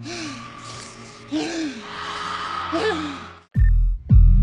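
A person's breathy gasps and strained groans over a hissing background, three short bending cries in all. The sound cuts to silence near the end, then a loud deep hit starts electronic music.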